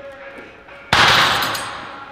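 Weight stack of a seated cable row machine slamming down once as the handle is released, a single loud crash about a second in that dies away over about half a second, over background music.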